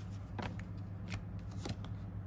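Tarot cards being handled and shuffled, a handful of short, sharp card flicks and snaps spread across the two seconds, over a steady low hum.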